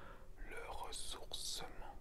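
A man whispering in French: soft, breathy speech without voice, with sharp hissing consonants about a second in.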